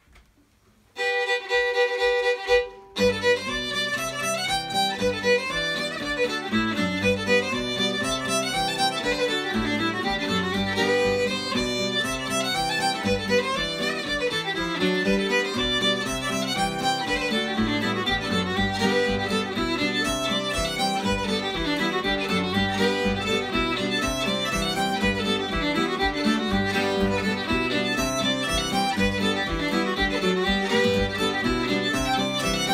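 Old-time fiddle tune in G played fast on fiddle in standard tuning, backed by a strummed acoustic guitar. The fiddle starts alone about a second in, and the guitar joins about two seconds later.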